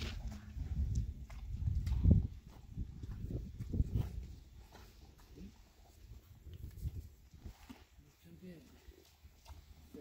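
A low rumbling noise on the microphone through the first few seconds, with scattered light clicks and shuffles of a horse and handler moving on a dirt pen floor. A soft murmured voice comes in briefly near the end.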